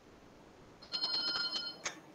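A high-pitched ringing tone of several steady pitches together, lasting about a second and starting a little before the middle.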